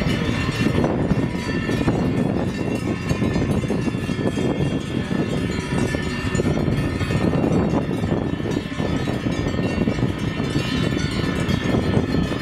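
Many cowbells on a herd of walking Aubrac cattle, clanking and ringing together in a continuous jangle.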